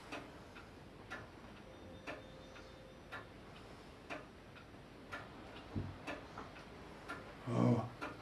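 A clock ticking faintly and evenly, about once a second. A short voice sound comes near the end.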